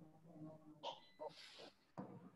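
Near silence, with a few faint short sounds about a second in and near the end.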